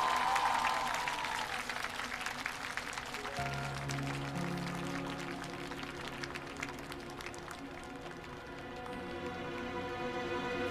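Audience applause over held music from a live stage performance, the clapping strongest in the first few seconds. A new low chord comes in about three seconds in.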